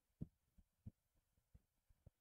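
Faint, soft taps of a pen or marker writing notes, about five short knocks over two seconds, with near silence between them.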